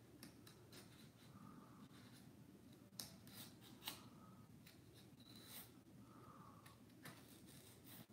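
Faint, short scratchy strokes of a craft knife cutting through corrugated cardboard, with two sharper clicks about three and four seconds in.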